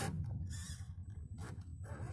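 Radio-controlled scale crawler's electric motor and drivetrain running low and steady as the truck crawls through mud, with a few short scrapes.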